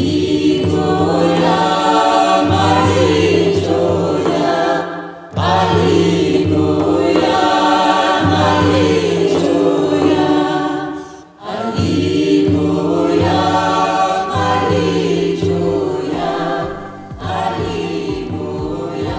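Choral music: a choir singing in long phrases over instrumental accompaniment with a pulsing low bass line. The music dips briefly between phrases, about five and eleven seconds in.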